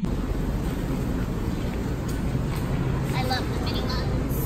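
Small wire shopping cart rolling on a concrete store floor, a steady low rumble from its wheels, with faint voices in the background.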